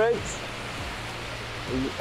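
Steady rushing of a large indoor waterfall, the Rain Vortex, with a low steady hum beneath it. A word ends at the start, and a voice begins again near the end.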